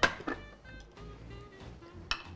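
A single sharp plastic click as the lid of a Cuisinart Mini-Prep food processor is taken off, followed by quiet background music.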